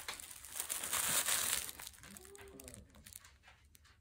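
Paper wrapping on a gift package crinkling as it is handled close to the microphone, loudest about a second in. It is followed by a fainter, short voice-like sound.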